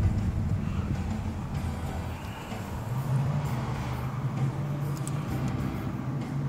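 Steady low engine and road hum inside a car's cabin as it drives, the engine note rising slightly about three seconds in.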